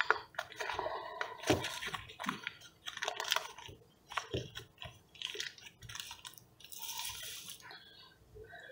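Paper wrapper on a block of butter crinkling and rustling as it is peeled open by hand, in a run of irregular crackles.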